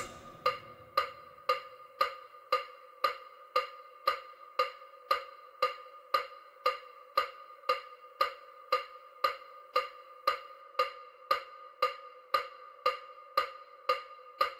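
EMDR bilateral-stimulation track: short pitched clicks in an even rhythm, about two a second, each with a ringing tone.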